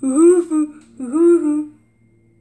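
A person humming a short wordless tune: two hummed phrases, each rising then falling in pitch, stopping shortly before the end.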